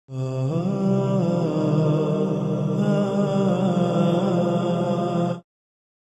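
A voice chanting a slow melodic line with long held notes and gliding pitch, cutting off abruptly about five and a half seconds in.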